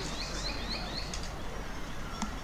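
A bird calling a rapid series of short, high, rising notes, about four a second, that stops a little over a second in.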